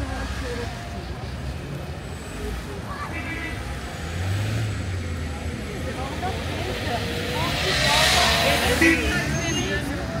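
Street traffic at a city intersection: engines of a bus, a box truck and cars running low and steady as they move through, with a louder rush of noise swelling about eight seconds in. Passersby talking.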